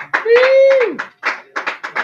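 A person's voice holds one drawn-out note that drops away at the end, then a quick run of hand claps.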